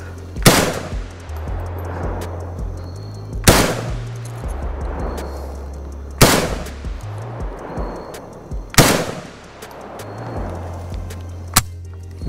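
Four single shots from a PSA AK-47 GF3 rifle in 7.62×39mm, fired slowly about three seconds apart, each followed by a short echo dying away. Background music with a steady bass line runs underneath.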